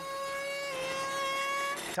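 Motor of a homemade golf-ball launching machine running with a steady high-pitched whine, its pitch shifting slightly about two-thirds of a second in.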